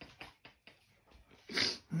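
A man eating a pastry: faint mouth clicks of chewing, then a short, sharp breath through the nose about one and a half seconds in. At the very end a hummed, appreciative "mmm" of tasting begins.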